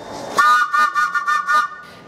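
A London Underground D78 Stock train's horn sounding once, a single steady blast of about a second and a half.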